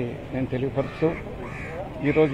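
A man speaking, with a bird cawing in the background in the second half.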